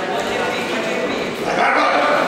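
Several people shouting in a large, echoing sports hall during a boxing bout, with short sharp yells that grow louder and higher about one and a half seconds in.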